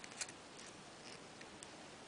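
A few faint, scattered clicks of round-nose pliers on a thin headpin wire as it is turned into a loop. The clearest click comes just after the start.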